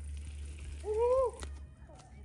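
A single drawn-out wordless vocal "ooh", rising and then falling in pitch, about a second in, over a steady low rumble.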